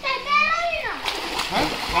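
Water splashing in a swimming pool as people swim and play, with a child's high voice calling out once in the first second, its pitch falling away at the end.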